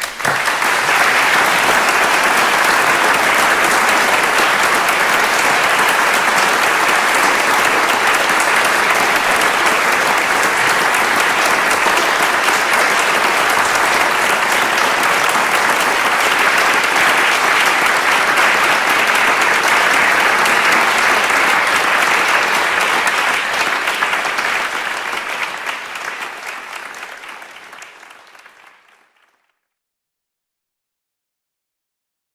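Audience applause, steady for about twenty seconds, then fading away over the last several seconds.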